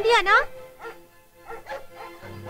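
A large dog barking: a loud burst of barks in the first half-second, then a few fainter barks.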